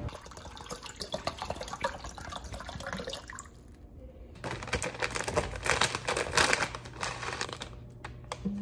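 Water poured from a plastic bottle into a stainless steel saucepan: a steady splashing pour in the second half, after light handling clicks and rustling.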